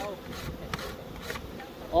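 Honey bees buzzing in large numbers around opened hives: a steady hum, with a few faint clicks.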